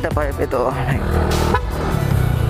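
Yamaha NMAX 155 scooter's single-cylinder engine running through an RS8 aftermarket exhaust while being ridden, a steady low hum under background music.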